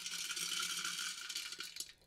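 Wood pellets poured into a galvanized metal funnel, a rapid rattling patter of pellets hitting the metal and each other, stopping just before the end. The funnel is being filled as the hopper of a homemade pellet-burning heater.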